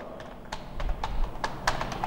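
Typing on a computer keyboard: a run of quick, irregular key clicks, mostly from about half a second in.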